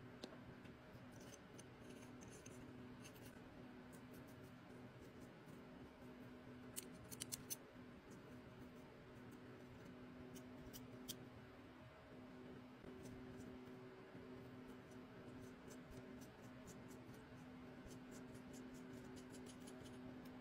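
Near silence with faint small metallic clicks and ticks from airbrush parts being handled and fitted together, including a quick cluster of clicks about seven seconds in, over a faint steady low hum.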